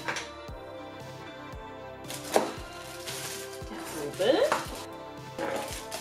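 A cardboard box is opened and its plastic-wrapped parts are unpacked. There is a sharp snap about two seconds in, then a short rustle of packaging, over steady background music.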